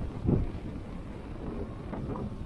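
Street traffic with double-decker buses running close by, a steady low rumble. A gust of wind buffets the microphone about a third of a second in.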